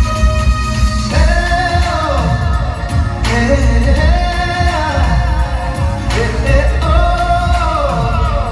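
A man singing live into a stage microphone over music with a heavy, steady bass. His sung line starts about a second in and slides up and down between held notes.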